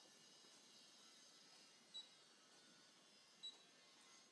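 Two short, high touch-screen key beeps from a Brother ScanNCut cutting machine as a stylus taps its screen, one about halfway through and one about a second and a half later, over near silence.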